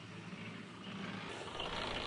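Portable concrete mixer running with a steady hum while its drum turns a batch of concrete.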